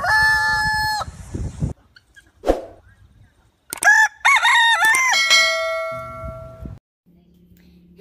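A rooster crowing: one long crow ends about a second in, and a second crow comes near the middle. Right after the second crow, a chime of several tones rings and fades away.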